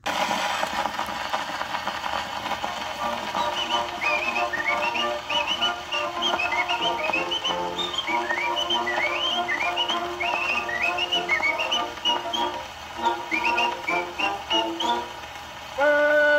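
Acoustic gramophone playing an early 78 rpm disc with its surface hiss: a small orchestra's introduction starts abruptly as the needle drops, and from about four seconds in a whistler joins with short upward-swooping notes of the tune.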